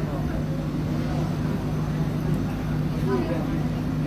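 Steady low hum under indistinct background voices of people talking in a busy hall, with a few faint spoken words.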